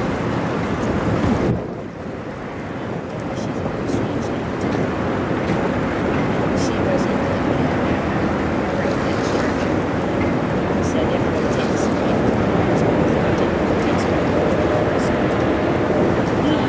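Wind buffeting the microphone over waves washing on the shore, with a faint steady hum underneath; the loudness dips briefly about a second and a half in.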